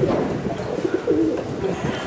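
Pigeons cooing, a few short low coos about a second in, over a steady background hum.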